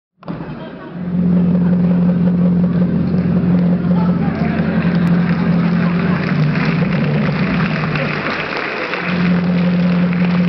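Car engine sound running steadily, its note dropping lower for a couple of seconds past the middle and coming back up about a second before the end.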